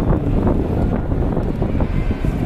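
Wind buffeting the microphone, a steady loud low rumble.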